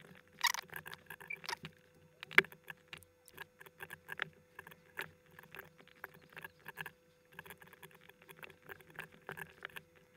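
Quiet, irregular clicking of a computer mouse and keyboard as objects are added and moved in 3D software, several clicks a second, over a faint steady hum.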